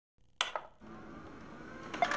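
A sharp click shortly after the start, then a faint, steady hum with a faint tone slowly rising.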